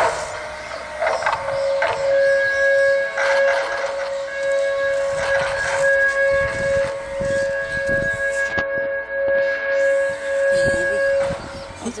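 A steady, high-pitched whine with overtones, siren-like, sets in about a second and a half in and holds for about ten seconds, wavering slightly in loudness before it cuts off near the end. A brief loud rush of noise comes at the very start.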